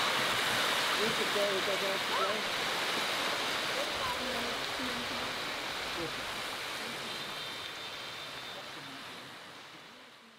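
Small waves washing on a pebbly shore: a steady rush of surf with faint distant voices in it, fading out gradually towards the end.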